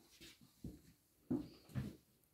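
Faint shuffling and soft thumps of someone sitting down at a digital piano, with three short knocks, the loudest a little past halfway.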